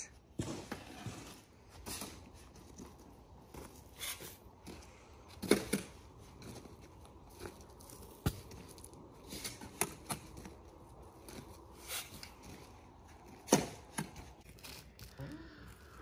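Sand being spread and worked smooth by hand and shovel for a paver bedding layer: irregular short scraping rasps, a few of them louder.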